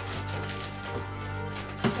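Background music with steady sustained notes. Near the end come a brief sharp noise and a laugh.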